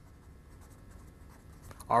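Faint handwriting: a writing tool stroking across a surface as words are written out.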